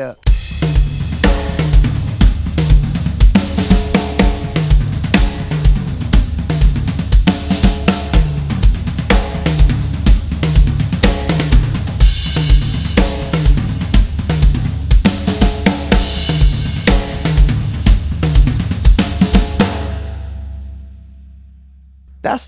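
Acoustic drum kit playing a groove: steady bass drum pulse, snare and tom figures, and cymbals. Near the end the playing stops and the kit rings out and fades.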